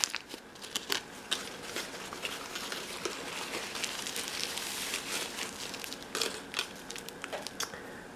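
Aluminium foil crinkling and a paper towel rustling as a foil-wrapped jewelry packet is unwrapped by hand. There is an irregular scatter of small crackles, with a softer, steadier rustle in the middle.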